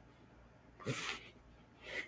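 A person's short, breathy intake of air about a second in, in a pause between read-aloud sentences, with faint room tone around it.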